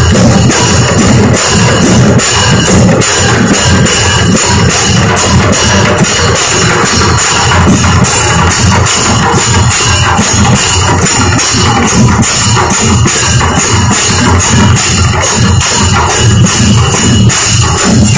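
Live temple drumming: large double-headed barrel drums, beaten with sticks in a fast, steady, unbroken rhythm, with the bright ring of hand cymbals over the beat.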